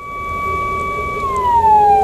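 Ambulance siren heard from inside the cab, held on one high tone and then falling slowly in pitch from a little past a second in, over the hum of the van in traffic.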